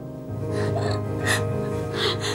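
A woman crying with a few gasping sobs over steady, sustained background music.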